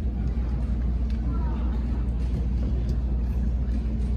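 A steady low rumble of room noise in a large hall, with faint, indistinct voices of an audience murmuring over it.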